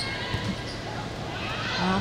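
A volleyball being struck during a rally, with a couple of dull hits near the start and about half a second in, over the steady murmur of an indoor sports hall.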